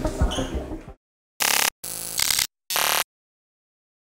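Background music cuts off about a second in. Three short, buzzy electronic sound effects follow, the middle one longest, as an outro sound for a subscribe end screen.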